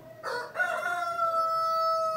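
An animal's call: a short rising note, then one long note held for about a second and a half, dropping slightly at the end.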